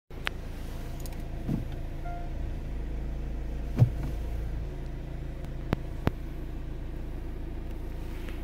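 2017 Kia Sportage engine idling, a steady low hum heard inside the cabin. A few sharp clicks are heard, with a louder knock a little before four seconds in.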